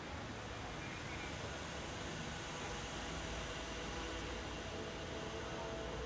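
Steady outdoor background noise: a low rumble with hiss and a few faint steady hums, no distinct event standing out.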